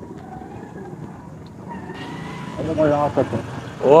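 Faint low background rumble, with a man's brief murmured voice about three seconds in.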